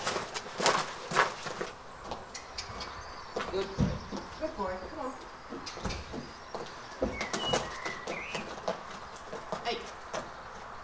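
A horse's hooves and a person's footsteps crunching on gravel, with a few dull thumps about 4, 6 and 7 seconds in. Birds chirp in the background.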